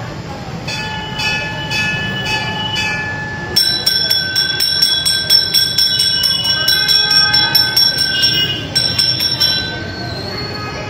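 Temple bells ringing at a shrine. First a bell is struck about twice a second. A few seconds in, a louder, higher-pitched bell takes over, rung rapidly at about five strikes a second, and stops just before the end.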